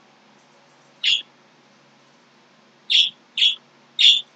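A small bird chirping: a few short, high chirps, one about a second in and a quick pair near the end.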